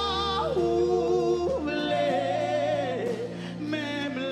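A woman's solo worship singing into a microphone: long held notes with vibrato, sliding between pitches, over a steady low accompaniment.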